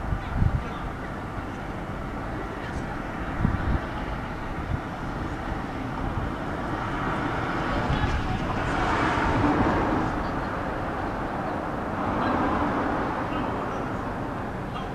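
Outdoor street ambience at a tram stop: a steady background of traffic noise that swells as vehicles pass, about halfway through and again near the end, with a few low thumps in the first few seconds.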